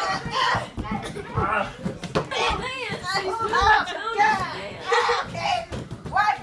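A group of children and adults talking and calling out over one another during play, with a few short sharp taps among the voices.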